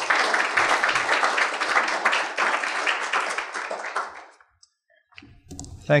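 Audience applauding, fading out about four seconds in.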